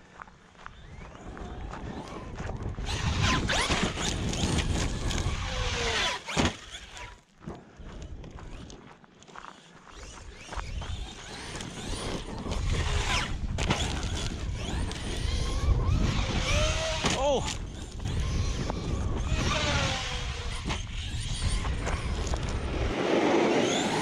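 Traxxas XRT 8S electric RC truck driven hard over grass: its brushless motor whines up and down in pitch with each throttle burst, over a constant rush of tyre and drivetrain noise.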